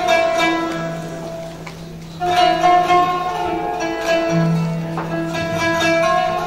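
Solo instrumental taksim, an improvised opening on a Turkish plucked string instrument, playing long held melody notes over a steady low drone note.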